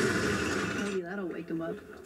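Film soundtrack with orchestral drums playing back as a dense wash that drops away about a second in, followed by a brief spoken voice.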